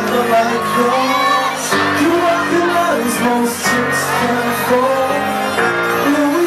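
A man singing into a handheld microphone over a pop backing track played loud through a club sound system.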